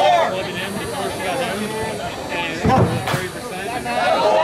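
Background talk and chatter from players and onlookers at a softball game, with one sharp crack about three seconds in, fitting a slowpitch bat hitting the ball.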